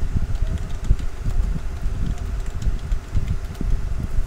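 A low, uneven rumble of background noise on the microphone, with faint keyboard key clicks over it as text is typed.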